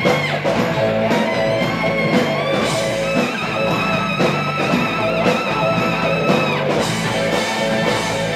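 Live rock band playing, with saxophone and electric guitar over bass and drums; a long high note is held through the middle, ending shortly before the close.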